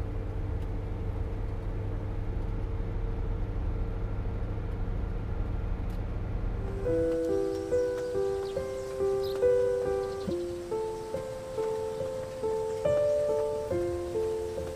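Steady low drone of a bus cabin under a soft held tone; about seven seconds in the drone drops away and light background music begins, a melody of short ringing notes.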